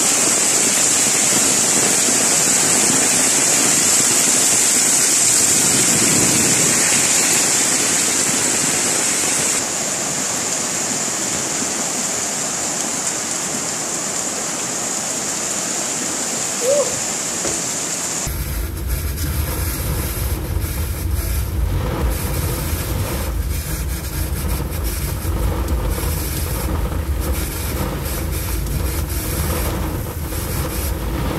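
Heavy rain and rushing floodwater, a loud steady noise. About eighteen seconds in it cuts to a deeper rumble of a car moving through floodwater in heavy rain, heard from inside the cabin.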